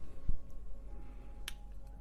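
A few short clicks over quiet room tone, the sharpest about a second and a half in, with faint held tones in the background.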